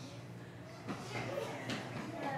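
Quiet room with faint, indistinct voices over a steady low hum.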